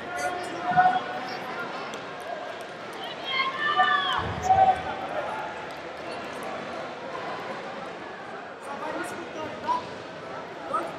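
Voices shouting from the sidelines of a grappling match over the steady murmur of an indoor tournament hall, the loudest shouts about three to five seconds in.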